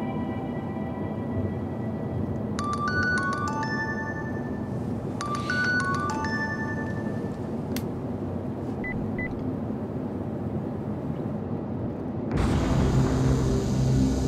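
Ominous background film score: a steady low rumbling drone with two short clusters of high, chiming synth notes. Near the end a sudden, louder noisy swell comes in.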